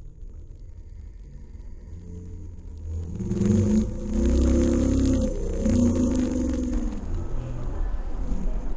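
Low rumble of a car heard from inside the cabin. It grows louder about three seconds in, when a pitched sound rises and falls over it for several seconds.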